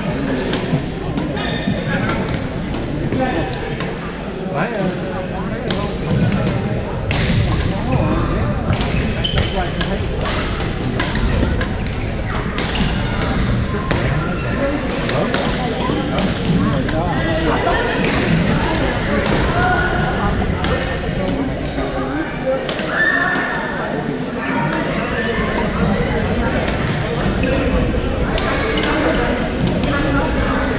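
Badminton rackets striking shuttlecocks in many sharp, irregular smacks from several courts at once, over a steady hubbub of players' voices in a large gym hall.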